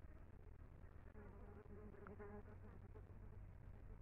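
Near silence, with a faint buzz of a flying insect that passes for about a second, starting about a second in.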